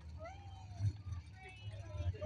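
Faint voices over a steady low rumble of idling engines.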